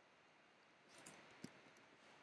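Faint computer keyboard typing: a few soft key clicks about a second in, one slightly louder, over near silence.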